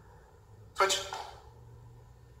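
A man's voice calling out "Switch!" once, a short, sharp coaching cue for a knee-switch drill, with quiet room tone around it.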